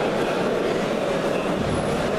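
Steady murmur of a crowd of people talking at once in a large sports hall, with no single voice standing out.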